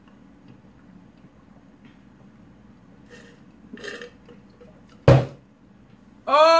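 A woman burps once, short and loud, about five seconds in, after sipping a drink through a straw. A couple of softer sounds come a second or two before it.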